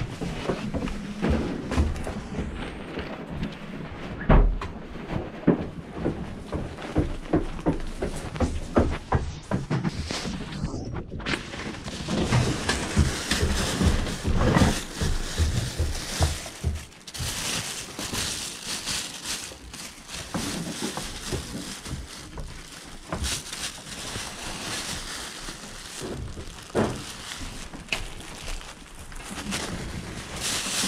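Hands rummaging through plastic bags and piled clothing: plastic crinkling and rustling, broken by irregular knocks and thuds as items are pushed aside. The rustling grows denser about halfway through.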